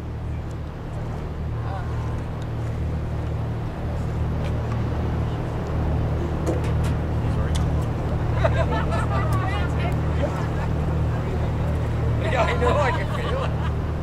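Tour boat's engine running with a steady low drone. Voices talk briefly twice over it, about halfway through and near the end.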